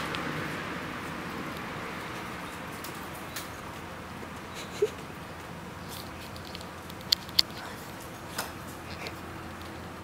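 A steady, quiet background hum and hiss with no clear source, broken by a few faint ticks in the second half: one about halfway through, two close together a little later, and one more near the end.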